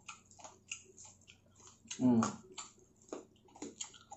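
Close-miked eating: chewing of fried pork belly and rice, heard as a quick scatter of short wet mouth clicks and smacks, with a short voiced hum about two seconds in.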